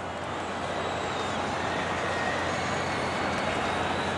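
Football stadium crowd noise: a steady din from the stands, swelling slightly over the few seconds.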